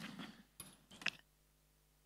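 Light knocks and handling sounds of metal-framed chairs being lifted off a stage floor, two sharper knocks standing out. The sound then cuts off suddenly to silence.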